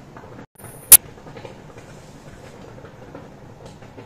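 Steady background hiss, cut by a brief dead gap about half a second in, then a single loud, sharp click just under a second in.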